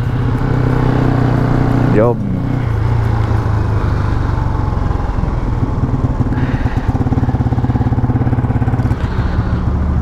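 Yamaha LC135 moped's single-cylinder engine running as the bike rides slowly in traffic, with wind and road noise on the microphone. The engine note drops at about nine seconds as the bike slows.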